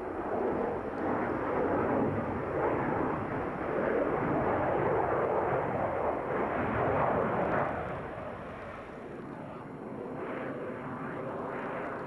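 A Saab JA-37 Viggen fighter's single Volvo RM8B turbofan jet engine runs loud as the aircraft flies past in a display. The noise is a steady rush that eases off after about eight seconds.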